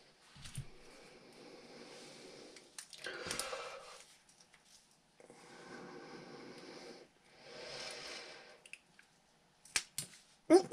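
Faint scratching and squeezing of needle-nose pliers gripping a small plastic RC shock rod end, working its pivot ball loose, in several short stretches. A sharp click comes just before the end as the ball pops free.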